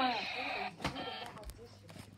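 A plastic toy blaster handled in the hand, with a sharp click a little under a second in and a fainter knock later.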